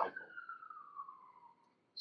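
A faint single tone sliding slowly down in pitch and fading away, like the falling half of a distant siren's wail.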